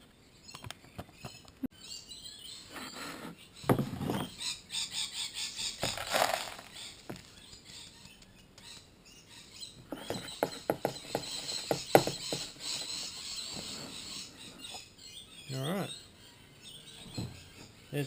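Dry paydirt gravel rattling in a stainless steel mesh sieve as it is shaken over a plastic gold pan, with the coarse stones tipped into a second plastic pan; two long spells of quick, gritty clicking. Birds chirp in the background.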